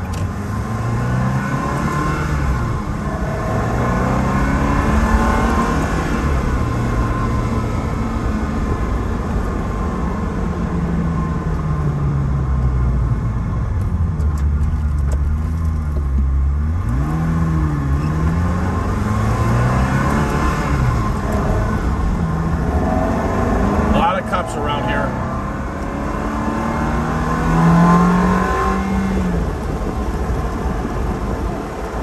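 Ferrari 360 Spider's 3.6-litre V8 engine under way, its pitch climbing with the revs and falling back again and again as the F1 paddle-shift gearbox changes gear, with a louder climb near the end.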